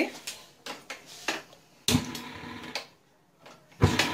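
Steel kitchen pot and utensils knocking on a gas hob: a few light clicks, then two sharper metal knocks, one about two seconds in and one near the end.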